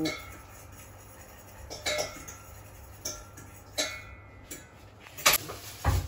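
A few light kitchen clinks and taps, about four spread over the seconds, from a pastry brush and dishes being handled while egg yolk is brushed onto puff-pastry sausage rolls, over a low steady room hum.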